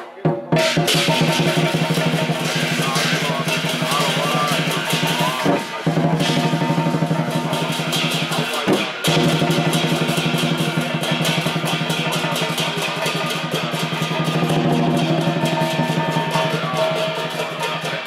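Lion-dance percussion: a large Chinese drum beaten in a fast, dense rhythm with brass cymbals clashing and ringing over it. The playing breaks off briefly at the start and again about six and nine seconds in.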